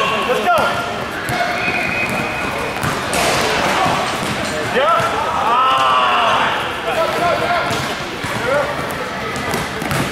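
A basketball being dribbled on the hard floor of a large gym during a game, with players' and spectators' voices throughout.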